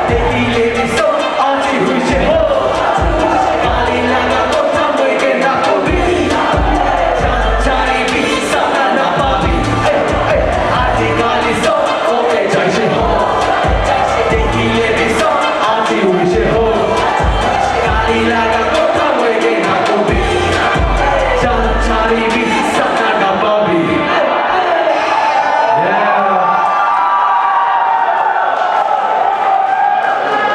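Live hip-hop set through a PA: a beat with heavy bass pulses, rapped vocals and a cheering crowd. The bass drops out about three quarters of the way through, leaving voices and crowd.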